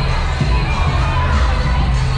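A crowd of wedding guests shouting and cheering, with bass-heavy music playing underneath.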